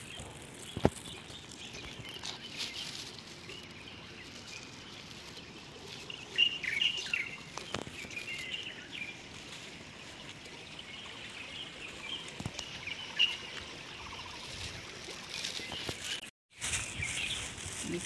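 Small birds chirping in short twittering runs over a steady outdoor hiss, the calls clustered in the middle of the stretch, with a few sharp clicks scattered through it.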